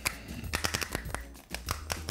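Irregular plastic clicks and crackles from a small bottle of coolant dye as its cap is twisted and worked open by hand.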